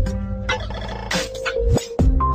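Short electronic logo jingle: held synth tones with a brief buzzy tone at the start and a few sharp percussive hits.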